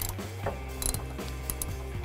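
Ratchet clicking as a 13 mm socket snugs the wheel hub bolts, in a few scattered ticks.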